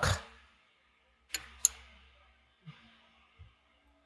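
Two sharp metallic clicks about a second and a half in, then a couple of faint knocks, from a lathe's tool post as the tool holder is being locked at center height.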